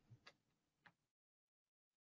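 Near silence, with two faint short clicks in the first second.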